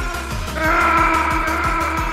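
Background music with a steady beat: sustained synth chords over a regular low pulse of about four beats a second.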